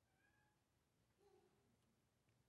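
Near silence: room tone with two faint, brief tones, one near the start and one just past the middle.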